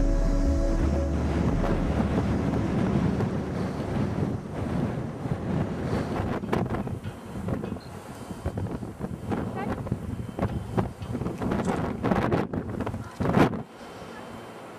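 Wind rumbling on the microphone, after background music fades out in the first second or two. A short loud bump near the end.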